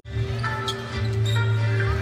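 A basketball being dribbled on a hardwood court during play, a few sharp bounces heard over a steady low hum and faint held tones.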